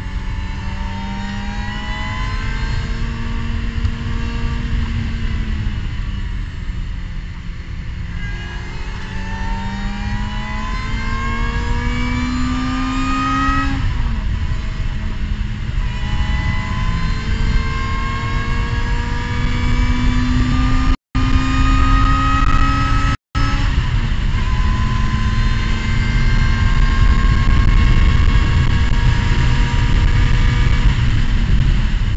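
Race car engine heard from inside the cockpit, pulling hard with revs climbing. The revs ease briefly, climb again, and drop sharply at two upshifts about 14 and 23 seconds in, from third to fourth and fourth to fifth, reaching around 7000 rpm. Wind and road rumble run underneath.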